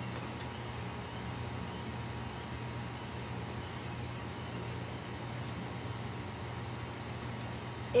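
Steady low hum with a steady high-pitched hiss over it, unchanging throughout, and a couple of faint clicks near the end.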